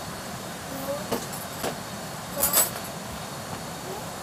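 A steady night-time background hiss, with faint voices in snatches and a few short clicks and rustles. The loudest rustle comes about two and a half seconds in.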